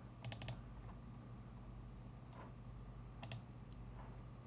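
Faint clicking on a computer keyboard: a quick run of about four clicks just after the start and another short run about three seconds in, over a low steady hum.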